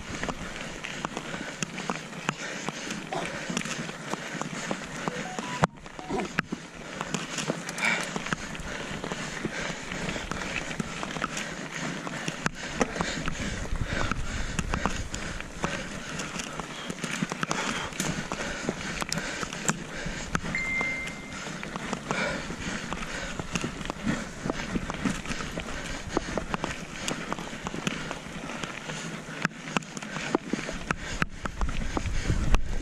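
Mountain bike rolling along a gravel trail: steady tyre-on-gravel noise with frequent small rattles and clicks from the bike, and wind rumbling on the microphone through the middle stretch.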